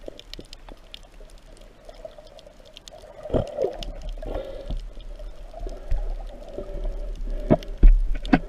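Underwater sound heard through a camera housing: water moving and gurgling past it with a steady hum, scattered sharp clicks, and a few dull knocks, the loudest about three and a half seconds in and near the end, as a spear is worked along the seabed and a fish is speared.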